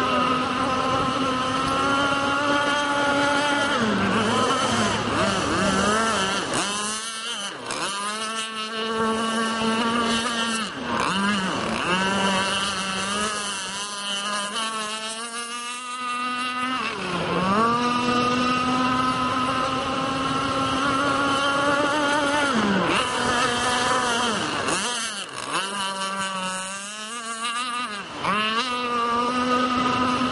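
Radio-controlled speedboat engine screaming at full throttle across the water, one steady high note that dips briefly in pitch several times as the boat turns or eases off, then climbs straight back.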